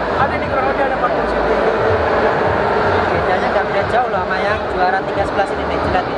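Speech: a man talking, over the steady background noise of a large hall.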